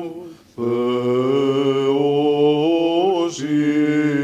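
A man's voice sings Greek Orthodox Byzantine chant for the blessing of the waters, in long drawn-out notes that slide slowly up and down. The voice breaks off briefly for breath about half a second in, then resumes.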